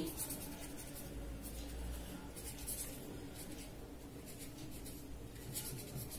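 Pen writing on paper, faint, in a few short spurts of strokes.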